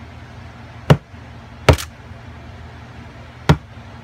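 Three sharp hand smacks on a hard surface, about a second in, near two seconds and shortly before the end, struck to set off a sound-activated camera trigger. A low steady hum runs underneath.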